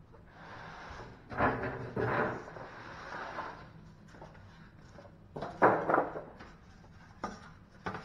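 A chest freezer cabinet and its cardboard packing being handled and shifted: a rubbing, scraping sound over the first few seconds with two knocks in it, then two more knocks a little past halfway and a lighter one near the end.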